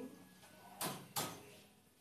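Pliers working a misplaced small nail out of a wooden cage frame: two short, sharp sounds a little under and a little over a second in, as the nail is gripped and pulled free.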